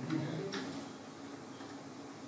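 A few soft clicks of laptop keys being pressed, over faint room tone.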